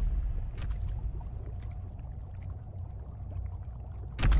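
A low rumble that slowly fades, with a few faint ticks and clicks over it.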